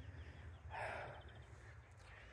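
A man's single audible breath, like a short sigh, about three-quarters of a second in, over a faint low outdoor rumble.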